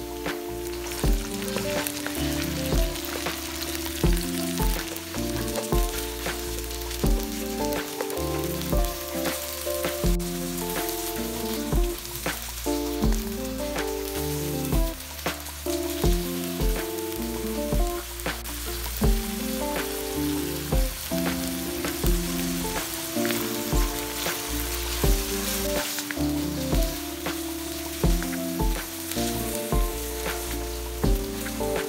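Minced beef frying with onion and garlic in hot oil, a steady sizzle, with a spatula scraping and stirring it in the pan. Background music with a melody and beat plays along.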